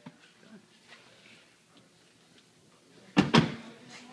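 Two sharp thunks in quick succession, a little over three seconds in, from a Tesla Model S's folding rear seatbacks being pushed home into their latches, with faint small clicks before them.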